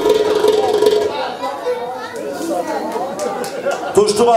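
Several people talking at once in a large hall, a jumble of voices with no single clear speaker. A steady held tone lingers for about the first second.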